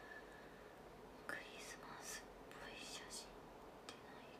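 A young woman whispering softly to herself, two short breathy phrases in the middle, over near-silent room tone.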